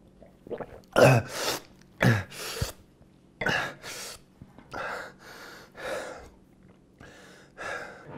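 A man gasping for breath after gulping down a glass of wine: a series of about ten loud, breathy gasps and exhales, mostly in pairs, with the loudest about a second in.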